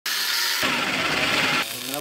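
Angle grinder cutting through a steel bar, a steady high grinding that stops abruptly about a second and a half in.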